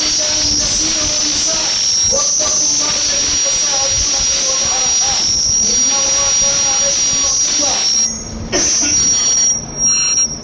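A man's voice chanting in long, held notes through a microphone and loudspeaker, over a steady high-pitched whine and hiss from the sound system. The sound briefly drops out twice near the end.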